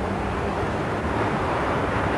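Steady outdoor background noise with a low rumble and no distinct events.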